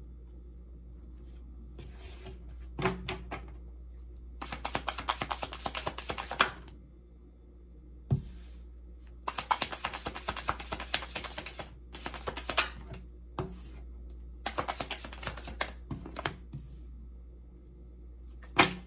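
A deck of tarot cards shuffled by hand: several runs of rapid papery clicking, each lasting one to two seconds, with short pauses between them.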